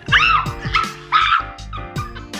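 A woman gives two short, high-pitched yelps over background music, reacting to something spicy burning her lips.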